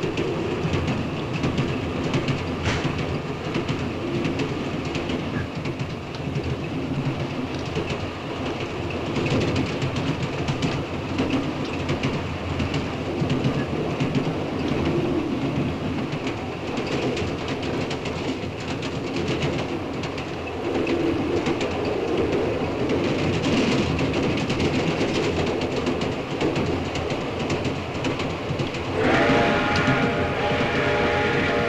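Passenger train running, heard from inside a railway carriage: a steady rumble with the rhythmic clatter of the wheels over the rail joints. A held, pitched tone joins in near the end.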